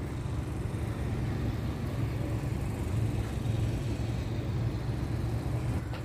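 Steady low rumble of distant engines, with no distinct events.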